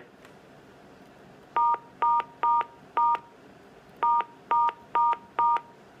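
Touch-tone (DTMF) keypad tones from a Panasonic desk phone: the star key pressed eight times, in two quick runs of four short beeps with a pause of about a second between the runs.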